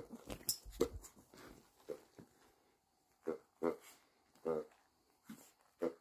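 Chihuahua playing with a plush hedgehog toy: bumps and rustling in the first second, then several short pitched grunts in the second half.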